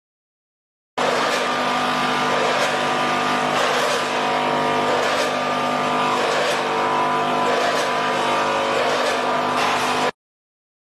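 Vertical form-fill-seal bagging machine with multihead weigher running: a steady mechanical hum with a regular clack about every 1.3 seconds as it cycles through bags. It starts suddenly about a second in and cuts off at the end.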